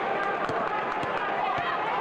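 Basketball game sound: steady crowd noise in the arena, with sneakers squeaking on the court and a few sharp knocks.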